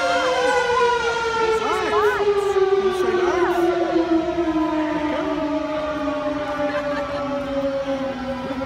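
Fire truck's mechanical siren winding down, its pitch falling slowly and steadily throughout, with brief voices over it.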